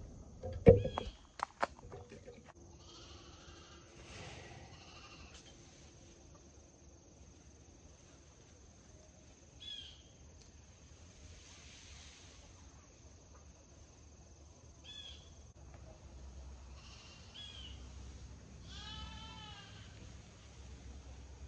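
Chickens giving several short squawking calls, the last one near the end a quick run of rising-and-falling notes, over the faint hiss of a garden hose spraying water onto a compost pile. A few sharp knocks come in the first second or two.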